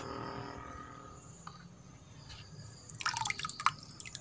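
Water dripping and splashing as a plastic strainer scoops the white film off a basin of water, with a quick flurry of drips about three seconds in.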